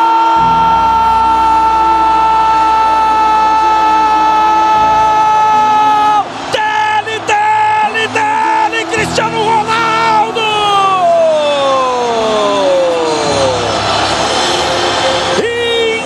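A commentator's goal call: one long held shout of "Gol" at a steady high pitch for about six seconds, then broken shouting and a long falling note, with noise like crowd cheering near the end.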